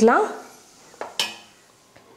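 Steel ladle knocking against a stainless steel pot of thick cooked sago batter: two brief clinks about a second in, the second louder.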